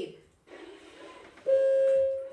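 A steady, even tone, as from a sound effect in recorded story audio, starts suddenly about one and a half seconds in and holds without wavering for under a second; before it there is only faint background hiss.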